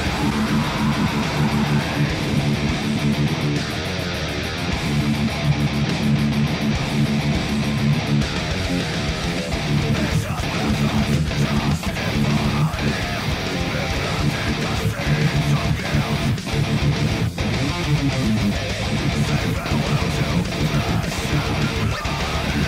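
Ibanez RGAIX6FM electric guitar recorded direct through Bias FX 2 amp simulation, playing a continuous heavy metal part with distortion.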